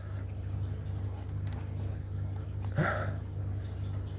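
A steady low hum, with a short voiced grunt about three seconds in.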